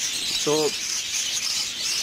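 Dense, steady chatter of many small caged birds chirping and twittering at once, high-pitched and continuous.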